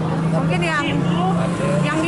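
A woman speaking Indonesian, over a steady low motor hum.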